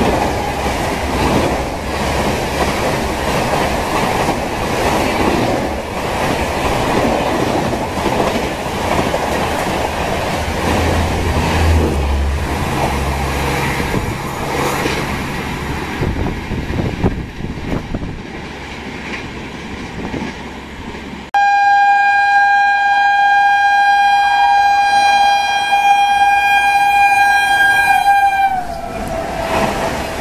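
Express passenger coaches rush past at speed, wheels clattering over the rail joints, for roughly the first half. After a quieter stretch, an electric locomotive's horn sounds suddenly and loudly about 21 seconds in. It holds one steady chord for about seven seconds, and its pitch drops as the locomotive passes.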